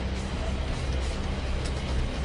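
Steady, deep rumble of a tornado's wind, with a music bed underneath.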